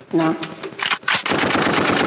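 A burst of rapid automatic-gunfire crackle, a fast string of sharp cracks lasting about a second, starting a little past a second in. It sounds like a machine-gun sound effect.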